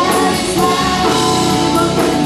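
Live rock-funk band playing: drum kit, electric bass and electric guitars under a sung lead vocal.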